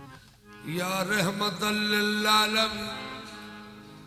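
A man's voice, amplified through a handheld microphone, chanting a salam. It starts about half a second in as one long held line that bends in pitch, then fades away toward the end.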